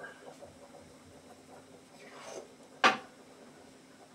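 A single sharp knock of a hard object, about three seconds in, over faint kitchen room sound with a low steady hum.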